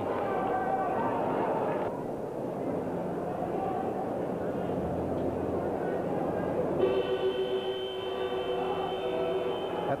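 Crowd noise in the stands of a football ground. A steady horn-like tone sounds for about two seconds at the start, and another steady, lower tone sounds for the last three seconds, most likely the ground siren starting the second half.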